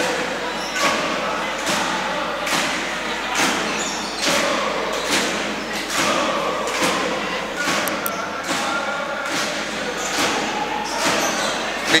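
Crowd in an indoor basketball gym, with a steady beat of sharp thuds a little faster than one a second and voices chanting between them.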